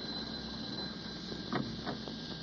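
Steady hiss and hum of an old broadcast transcription recording, then two light knocks about a second and a half in: a door-knock sound effect for a caller arriving.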